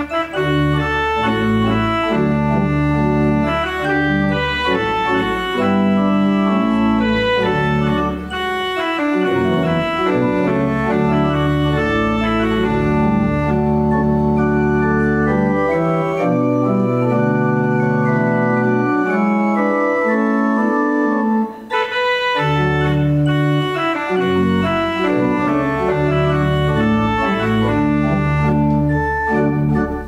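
Organ playing a slow prelude of long held chords over a sustained bass line. The bass drops out for a few seconds past the middle, then the full chords return.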